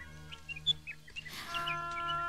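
Short, high bird chirps, the loudest a little under a second in, over quiet background music; about halfway a soft chord of held notes comes in.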